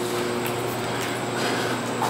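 Steady hum and rushing noise of boiler-room machinery, with a low constant drone underneath.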